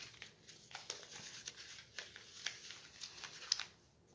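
Paper wrapper of an old gauze bandage crinkling as it is handled: a run of soft, irregular crackles that stops shortly before the end.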